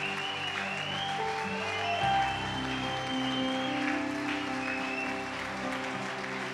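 Electronic keyboard holding sustained chords, moving to a new chord about two seconds in, with a congregation clapping in celebration.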